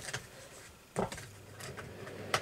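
A quiet room with a single short knock about a second in, followed by a faint steady low hum.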